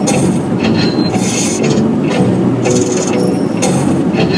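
A song playing on a car stereo, heard inside a moving car's cabin over steady road rumble.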